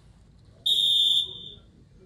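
A single high electronic beep, one steady tone about half a second long, starting a little past half a second in and fading out.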